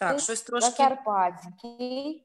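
A voice with guitar music, cutting in suddenly after silence.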